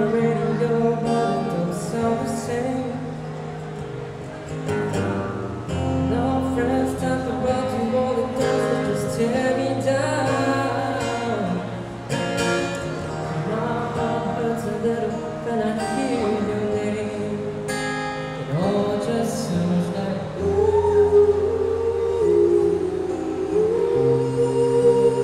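A man singing a song live into a microphone, accompanied by an acoustic guitar.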